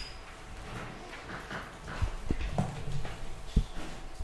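Sheets of paper handled and shifted on a hard floor: short rustles, then a few dull knocks, the loudest near the end.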